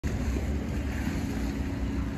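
Steady low rumble of wind buffeting the microphone outdoors, with a faint steady hum underneath.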